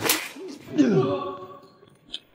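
A sharp swishing hit effect as a blow lands, then a man's pained cry that falls in pitch and fades.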